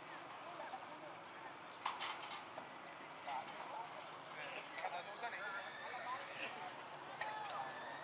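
Faint background ambience with weak distant voices and a few scattered soft clicks.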